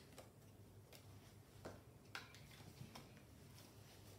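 Near silence with a few faint, scattered clicks from Pokémon trading cards and a booster pack being handled.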